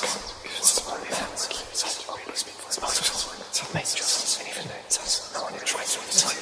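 Horror sound effect of eerie whispering, with hissed sibilants in quick, irregular bursts throughout; the whispered words "a baby" come right at the start.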